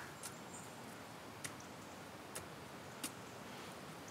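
Quiet background with four faint, irregularly spaced clicks.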